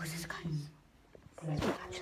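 A low, murmured voice in short bursts, with a quiet gap about a second in, over the rustle and knocks of the phone being handled against fabric.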